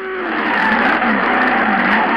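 Race car sound effect: a revving engine with squealing tyres, wavering up and down in pitch.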